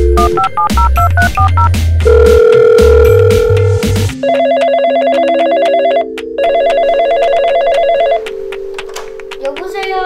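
Touch-tone keypad beeps as a phone number is dialled, over background music with a heavy bass beat, then a steady tone. A toy telephone rings in two warbling bursts over held music notes, and a voice comes in briefly near the end.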